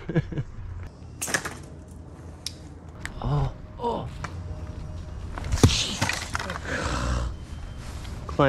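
A pole-mounted throw-ball slingshot fires with a sharp snap about a second in. A few seconds later a second sharp knock comes as the throw ball strikes the tree trunk and bounces back, followed by a rustling scramble. The thrower lets out two short grunts in between.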